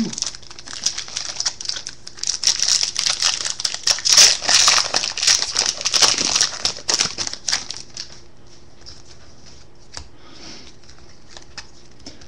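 Foil trading-card pack wrapper crinkling and tearing as it is pulled open by hand, loudest about four seconds in. The crinkling stops about eight seconds in, leaving only a few faint clicks.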